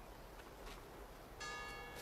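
A faint background, then a bell tone starts about one and a half seconds in and rings on steadily.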